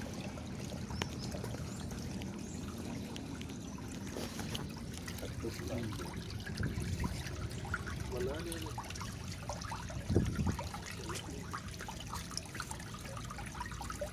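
Shallow water flowing steadily through a concrete drainage ditch, trickling and lapping around debris, with a single dull thump about ten seconds in.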